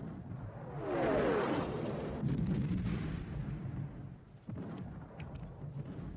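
Artillery shell explosion about a second in, with a falling tone at its start and a rumble that dies away over about two seconds, followed by a few scattered sharp cracks.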